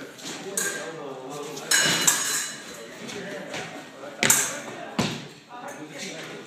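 Épée blades striking together and feet stamping on the fencing piste: a few separate sharp knocks, some with a short metallic ring, the loudest a little after four seconds in.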